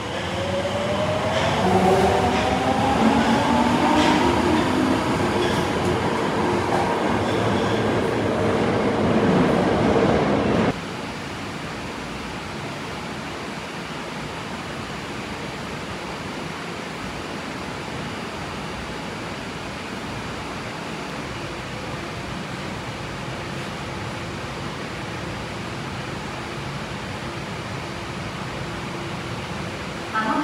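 Tokyo Metro Marunouchi Line subway train pulling out of a station: a whine from its motors climbs in pitch as it speeds up, over the rumble of the wheels. It cuts off suddenly about a third of the way in, leaving a steady hum of the underground platform.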